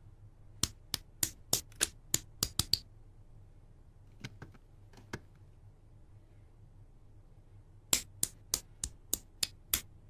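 LEGO bricks and Technic parts being pressed together by hand: quick runs of sharp plastic clicks, about three a second, a run in the first few seconds and another near the end, with a few fainter clicks between.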